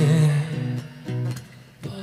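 Live male vocal over acoustic guitar: a held sung note fades after about half a second, then a few plucked guitar notes ring. The music dips quiet briefly before picking up again near the end.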